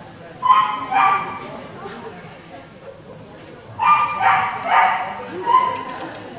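Papillon yipping in short, high-pitched barks: two about half a second apart near the start, then a quicker run of four from about four seconds in.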